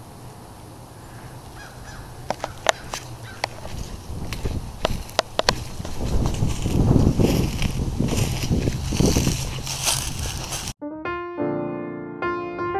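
Footsteps crunching through dry fallen leaves, with a few sharp clicks, followed by piano music starting abruptly near the end.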